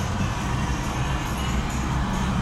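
Off-road vehicle's engine running with a steady low rumble, heard from inside the cab as the vehicle drives down through a sandy dip.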